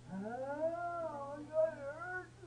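A man wailing in pain from a gunshot wound: two long, wavering cries, each rising in pitch and then falling away.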